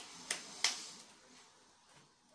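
Three short, sharp clicks or snaps within the first second, about a third of a second apart, the last the loudest.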